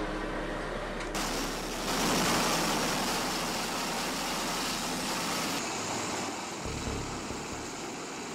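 V-22 Osprey's turboshaft engines and prop-rotors running on a ship's flight deck, a steady rushing noise that shifts abruptly in tone about a second in and again after five seconds.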